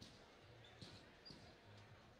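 Near silence in a large hall, with a few faint knocks and thuds.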